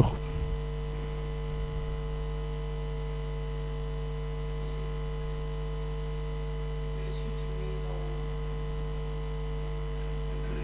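Steady electrical mains hum, a constant low buzz with several overtones.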